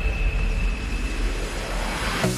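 Intro sound design for a pop song: a deep, steady sub-bass rumble under a faint high held tone that fades out partway through, then a swell of hiss building near the end into the song's start.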